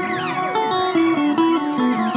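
Electric guitar played through effects pedals, picking a stepwise descending line of single notes while falling, gliding pitch sweeps swoop over it.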